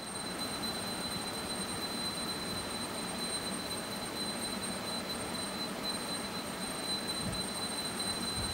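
Room tone: a steady hiss with a thin, high-pitched whine held at one pitch, the background noise of the microphone and recording chain.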